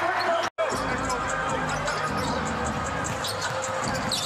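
Basketball being dribbled on a hardwood court over steady arena crowd noise, broken by a brief dropout about half a second in.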